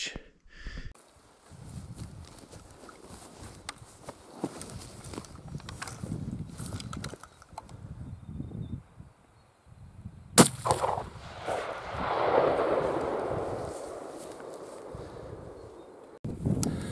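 A single shot from a Tikka hunting rifle about ten seconds in, followed by its echo rolling back off the surrounding hills for several seconds. Before the shot there is only faint low rustling and handling noise.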